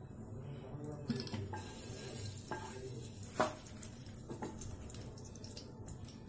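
Faint kitchen background: a low steady hiss with a few soft knocks and clicks scattered through it, the most prominent a little past the middle.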